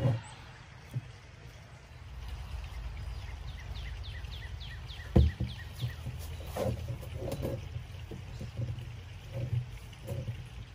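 A black plastic barrel being set in place among bush branches: one sharp thump about five seconds in, then smaller knocks and leaf rustling. Just before the thump, a bird calls a quick run of falling chirps.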